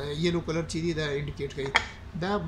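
A man talking, with one sharp click near the end.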